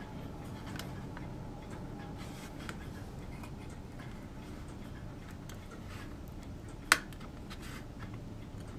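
Scattered small plastic clicks and taps as a plastic model partition's positioning pegs are worked into the slots of a deck piece, a tight fit; one sharper click about seven seconds in stands out over faint steady background noise.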